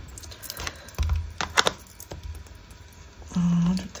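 Light tapping and scuffing of an ink blending tool dabbed and rubbed along the edges of a chipboard skull on a cutting mat, with a few sharper clicks about a second and a half in.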